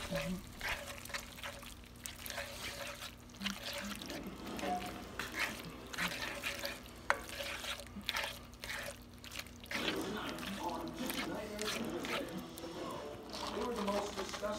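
Pasta shells being stirred with a spoon in a cast-iron skillet of simmering sauce: wet sloshing and bubbling, with scattered clicks of the spoon against the pan and a low steady hum underneath.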